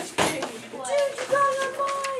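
Students' voices, with a short sharp noise just after the start and a long held vowel sound near the end.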